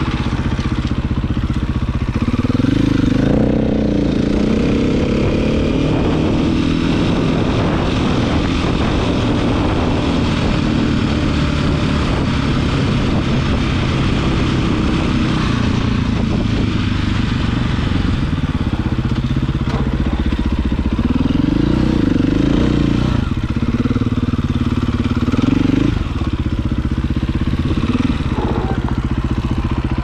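KTM 450 dirt bike's single-cylinder four-stroke engine running under way. The revs climb and drop with the throttle, most clearly about two to four seconds in and again from about twenty to twenty-six seconds in.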